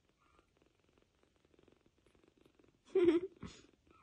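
Kitten purring faintly, a fast steady rattle, then a short, louder pitched sound about three seconds in, followed by a briefer one.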